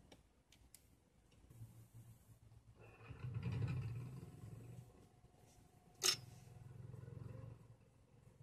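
Faint handling noise of small plastic model parts: a few light clicks, then one sharp click about six seconds in. A low hum swells around three to four seconds in and returns more softly afterwards.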